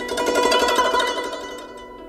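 AI-generated guzheng music: a rapid flurry of plucked zither notes that fades away near the end.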